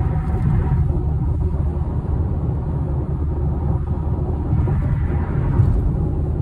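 Steady low road rumble and wind noise inside a Ford Mustang's cabin at highway speed, picked up by a handheld phone microphone.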